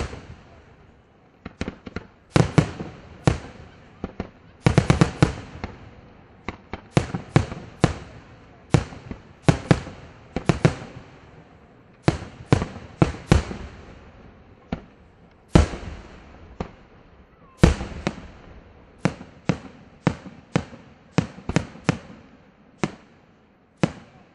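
Aerial firework shells bursting in an irregular run of loud, sharp booms, often several a second, with a dense volley about five seconds in.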